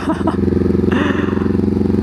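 Honda CB500X's parallel-twin engine running steadily while the motorcycle rides along, heard from the rider's seat. A hiss joins it about a second in.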